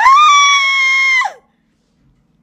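A woman's loud, high-pitched squeal, held for about a second and a half, rising at the start and dropping away at the end.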